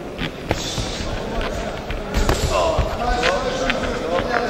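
Amateur boxing bout: sharp thuds from the boxers' gloves and feet in the ring, the loudest about half a second in and just after two seconds, with men's voices shouting in the second half.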